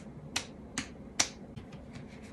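Hands slapping a bare belly: three sharp smacks about half a second apart, the last the loudest, followed by a few fainter pats.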